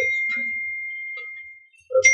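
A clear, high bell-like ding that rings and fades away over nearly two seconds, then sounds again at the same pitch right at the end.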